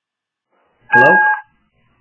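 Dead silence, then about a second in a man answers a phone call with a single "Hello?", heard through a telephone line, which cuts off the higher frequencies.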